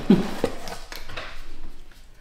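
A short laugh, then rummaging inside a cardboard box: a sharp click and the rustle and light knocks of packaging and items being handled as a small spice jar is lifted out.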